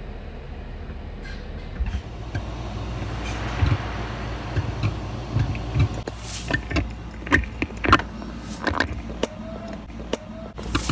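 Amplified pickup from a small microphone placed in the ear canal: a steady low rumble, then from about six seconds in a dense run of sharp clicks and crackles. The clicks are what the wearer attributes to twisting the neck and opening and closing the jaw.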